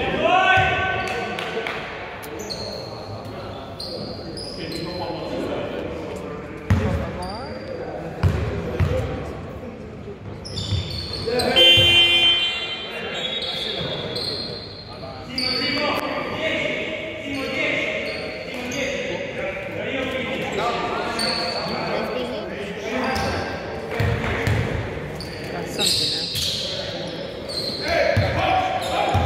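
A basketball being bounced and dribbled on an indoor court floor, irregular thumps echoing in a large sports hall, with players' voices calling out over it.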